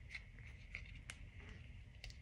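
A few faint soft ticks of a collapsible silicone funnel being pressed and folded in the fingers, over quiet room tone.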